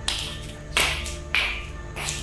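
Slippers slapping on a tiled floor, four sharp steps a little over half a second apart, over background music with sustained low notes.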